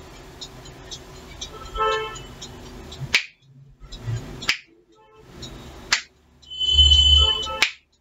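Fingers snapping at a steady pace, four sharp snaps about a second and a half apart, starting about three seconds in. A short pitched sound with several tones comes about two seconds in, and a louder one just before the last snap.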